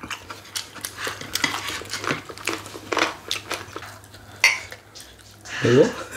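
Chopsticks and dishes clicking and clattering at a meal of fried chicken, a run of small sharp taps. A short rising vocal sound comes near the end.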